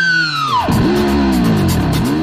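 Music with electric guitar: a high held note slides sharply down in pitch about half a second in, followed by lower notes that bend up and down.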